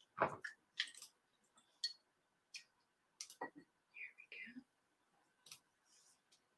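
Scattered light knocks and clicks of a paintbrush being rinsed in a cup of water and painting tools handled on a table, the loudest knock about a quarter second in.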